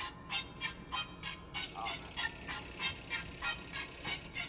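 Rhythmic electronic honking tones, about three a second, joined about one and a half seconds in by a loud, high-pitched buzz that pulses rapidly and runs to the end.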